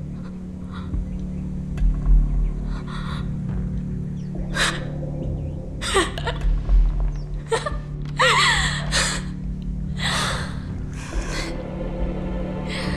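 Steady low background music under a woman's sobbing: a series of short, sharp gasping breaths, with a wavering, pitched cry about eight seconds in.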